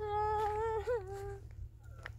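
A person's high-pitched wailing cry, one long held note with a quaver near its end, lasting about a second and a half.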